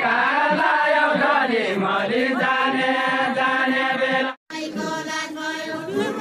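A group of men singing a Nepali deuda folk song in unison, unaccompanied, with drawn-out chanted lines. The singing cuts off for a moment about four seconds in, and a second group's singing starts straight after.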